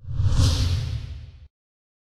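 Whoosh sound effect of a TV news channel's logo sting, with a deep rumble under it. It swells quickly, fades over about a second and a half, then cuts off suddenly.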